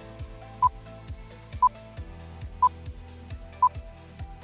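Quiz countdown timer beeping once a second, four short mid-pitched beeps, over background music with a steady drum beat.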